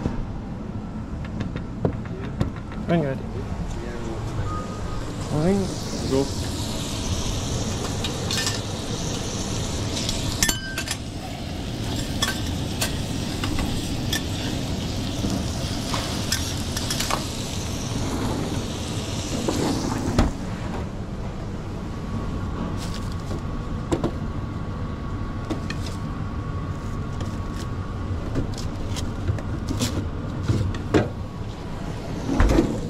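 Eggs and diced vegetables sizzling on a flat-top griddle, with occasional clicks and scrapes of a metal spatula, over a steady low kitchen hum. The sizzle is loudest in the middle stretch and fades out after about 20 seconds.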